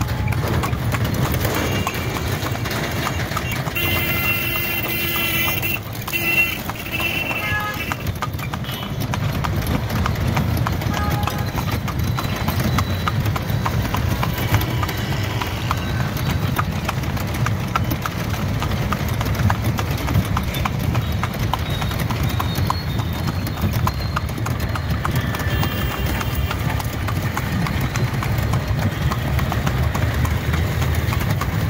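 Horse's hooves clip-clopping at a steady pace on a paved road as it pulls a tonga, a two-wheeled horse cart. Under the hoofbeats runs a steady low rumble.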